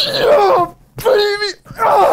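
A man shrieking with excited laughter: a high yelp that falls in pitch, a short break, then a held shout and a breathy laugh near the end.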